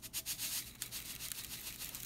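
Salt being poured into a disposable aluminium foil pan of spice mix, the grains landing as a faint, dense crackle of tiny ticks.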